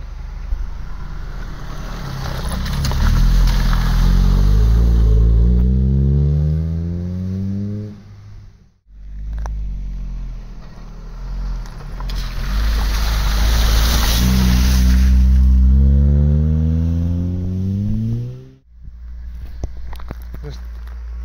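Vauxhall Astra GTE 16v's 2.0-litre 16-valve four-cylinder engine accelerating hard past, its note climbing, in two runs that each cut off suddenly. In the second run the car goes through a shallow ford with a loud rush of spray.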